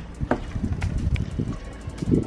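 Wind buffeting the microphone in an irregular low rumble, with a few faint clicks.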